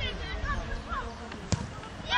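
A football struck once, a single sharp thud about one and a half seconds in, amid scattered shouts from players and spectators.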